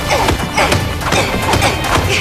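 Fight-scene sound effects: a quick run of hits and crashes, several a second, over action music.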